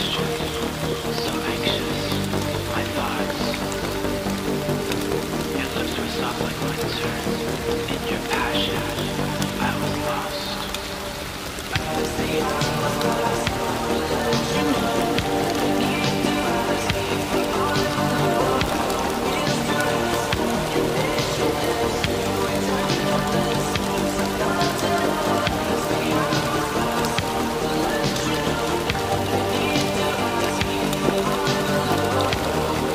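Steady rain with scattered drop ticks, mixed over slow music with long held tones. The music thins out and dips a little before twelve seconds in, then a fuller passage starts.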